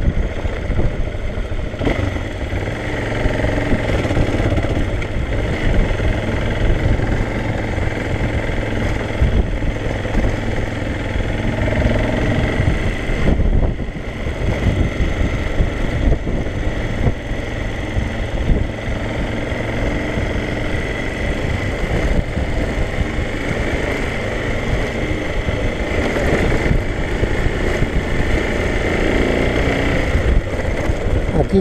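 Motorcycle engine running steadily while the bike is ridden along a dirt road, with continuous low rumble from wind and the road.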